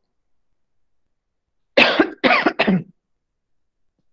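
A man coughing three times in quick succession, starting a little under two seconds in.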